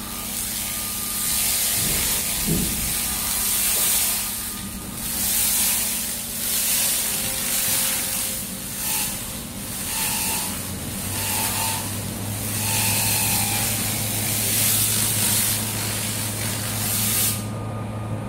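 Repeated surges of loud hissing, like air blowing or a spray, swelling and dipping about once a second and cutting off sharply near the end. A steady low hum comes in about eleven seconds in.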